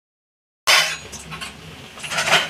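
Silence, then about two-thirds of a second in, a sudden loud hiss of pakoras frying in hot oil that quickly drops to a softer sizzle, with a few light metal clinks.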